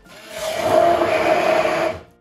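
Handheld immersion blender running down in a tall cup of barbecue sauce, a loud motor with a steady whine. It builds up over the first half second and stops abruptly near the end.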